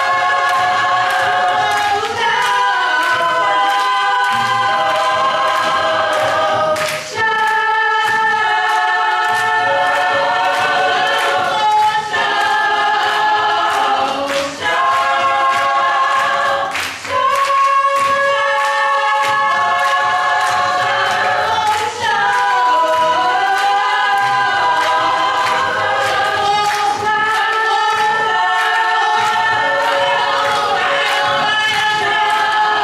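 A cappella gospel group of mostly women's voices singing in close harmony, holding long chords that change every few seconds, over a steady beat of sharp hits.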